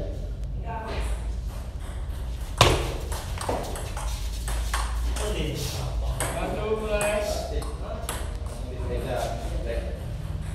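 Table tennis ball clicking off paddles and the table in a rally, with one loud sharp hit about two and a half seconds in. Voices talk in the second half.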